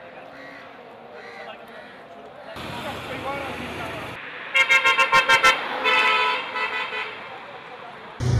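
Street crowd chatter, then a vehicle horn about halfway through: six quick toots in about a second, followed by more honking.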